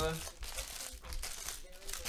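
Plastic wrapping crinkling and being torn open in repeated rustling bursts, as on a sealed trading-card box or pack being unwrapped.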